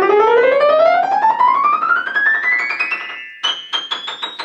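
Steinway & Sons grand piano played: a fast run rising steadily from the middle of the keyboard into the treble, then several short high notes struck one after another near the end. The owner says the freshly delivered piano is still somewhat out of tune until it settles in and is tuned.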